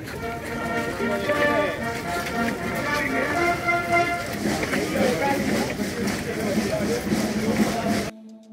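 A military band playing a march while a large crowd of marchers sets off, with many voices shouting and cheering over the music.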